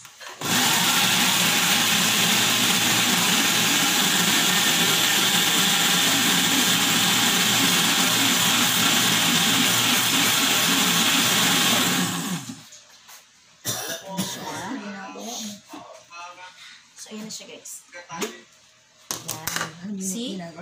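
Countertop blender running at one steady speed, puréeing mango chunks, for about twelve seconds before it switches off abruptly. Scattered light knocks follow as the glass jar is handled.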